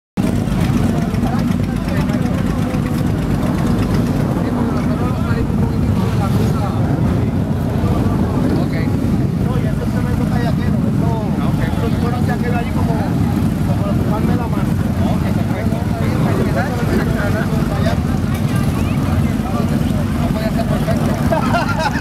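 Motorcycle engines running steadily in a dense, continuous low rumble, with people talking over them.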